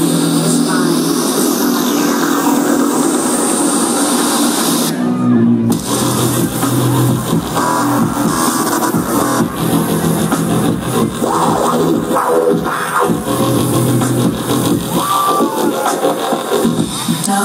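Live electronic dance music played loud through a festival sound system, with a steady bass line. About five seconds in, the high end drops out for under a second before the full mix returns.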